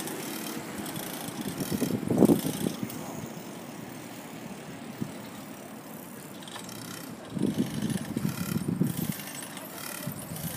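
Outdoor city ambience on a phone microphone moving through a plaza: a steady background hum, with two stretches of louder low rumble, one about two seconds in and a longer one from about seven to nine seconds, and a single small click near the middle.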